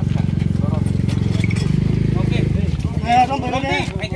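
A vehicle engine idling with a steady low rumble that changes character about two and a half seconds in; men's voices talk over it, clearest near the end.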